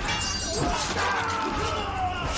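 Fight sound effects: a sharp crash of breaking glass, with shards ringing on, under men's grunts and shouts.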